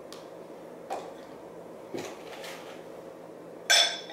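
Clear food-storage containers and their lids being handled and stacked on a glass tabletop: a couple of light knocks, then a loud ringing clink near the end as one is set down on the stack.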